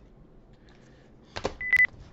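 A sharp click, then a short single-pitched electronic beep lasting about a quarter of a second near the end.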